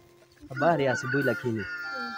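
A rooster crowing in the background, one long drawn-out call starting about a second in, over a man's voice.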